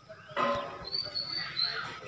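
Thin, high chirping whistles from a small bird, two short calls about a second in and near the end, heard in a pause between a man's spoken phrases, with a brief voice sound just before them.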